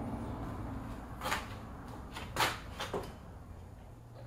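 An aluminium cabinet hardware jig being handled and set onto a wooden cabinet door: several light knocks and clacks, the loudest about two and a half seconds in.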